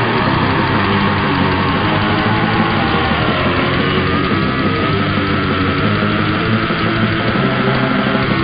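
Death metal band playing at full volume: distorted electric guitars, bass and drums, with a long held high note through the second half.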